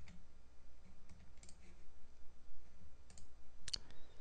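Scattered clicks from a computer mouse and keyboard, a few single clicks with pauses between and a quick pair near the end.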